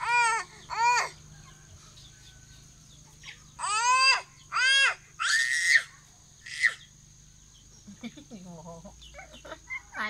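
A toddler's short, high-pitched cries: two just after the start, then a run of three or four around the middle, the fourth harsher and noisier, and a brief last one.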